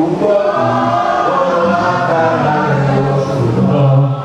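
Church choir singing a gospel worship song, several voices holding long notes together.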